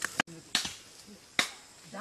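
Sharp chopping strikes on wood, four unevenly spaced blows, with voices talking in the background.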